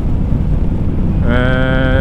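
Motorcycle riding at road speed: steady low engine rumble and wind noise on the microphone. A little past halfway a steady, unwavering pitched tone sounds for under a second.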